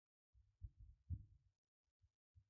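Near silence, with two faint low thuds about half a second apart.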